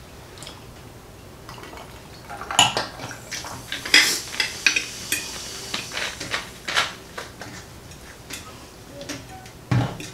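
A metal fork clinking and scraping on a glass plate, with glassware tapping a glass tabletop: a scatter of sharp clicks that starts about two and a half seconds in and runs on for several seconds.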